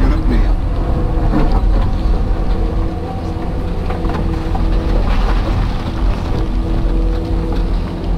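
Hydraulic excavator's diesel engine and hydraulics working under load, heard from inside the cab: a steady low rumble with a level whine over it.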